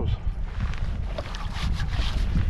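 Wind buffeting the microphone: a gusty low rumble throughout, with a few faint scuffs or taps in the second half.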